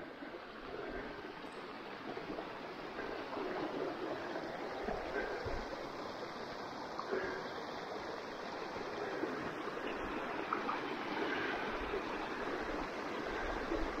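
Small snowmelt stream running over rocks: a steady rushing splash.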